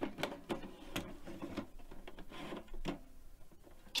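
Faint, irregular clicks and knocks of small objects being handled, getting a little quieter toward the end.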